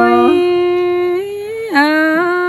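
A single unaccompanied voice singing a Tai-language folk song in long, steady held notes. It steps up to a higher note a moment in, breaks off briefly near the end, then starts a lower note.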